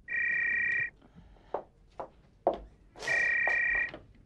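Telephone ringing: two warbling electronic rings, each under a second long, about three seconds apart, with a few light knocks between them.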